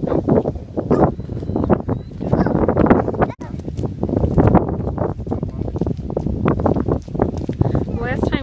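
Footsteps crunching on gravel and loose stones, with irregular crackling steps and low wind buffeting on the microphone.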